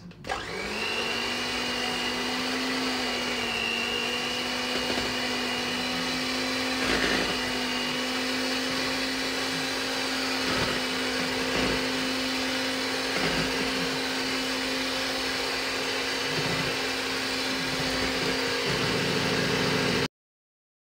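Hand-held electric mixer beating butter and icing sugar for cream cheese frosting. The motor spins up just after the start and then runs at a steady pitch, with the beaters knocking against the bowl now and then. It cuts off suddenly at the end.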